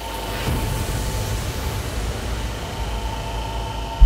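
A steady rushing noise with a faint steady hum running through it, cutting off suddenly at the end.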